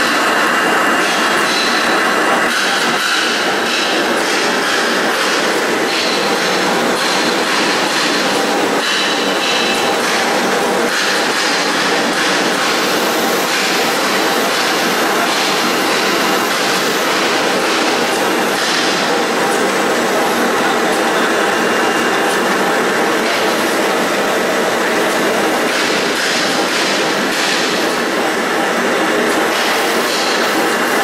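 Handkerchief tissue paper converting machine running at production speed: a loud, steady mechanical clatter with a fast, continuous rattle of ticks and a faint high whine.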